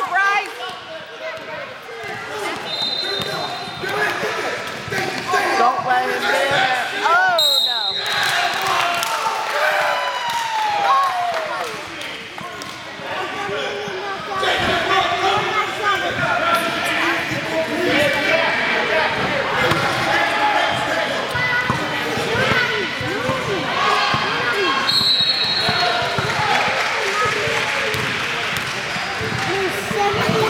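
Basketball being dribbled and bounced on a hardwood gym floor, with short high squeaks and the voices of players and spectators echoing through the large hall.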